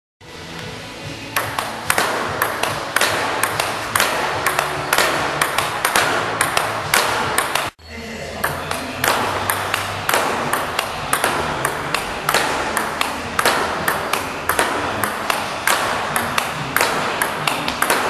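A table-tennis ball ticking fast and evenly off bat, table and rebound board in a continuous topspin rally, several clicks a second, over background music. The sound cuts out briefly about eight seconds in, then the rally clicks resume.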